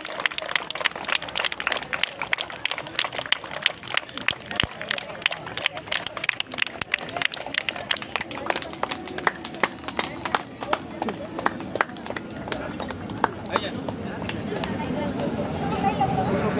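A small crowd clapping: scattered, irregular hand claps that are dense at first and thin out after about ten seconds. A babble of voices rises near the end.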